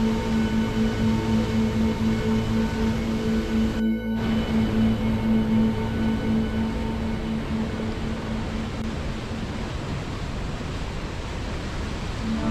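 Slow ambient music with long held notes over the steady rush of a river in rapids. The music fades out a couple of seconds before the end, leaving only the rushing water. There is a brief break in the water sound about four seconds in.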